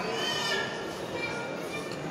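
Background voices of people in a mall, with a high, wavering squeal-like voice in the first half second.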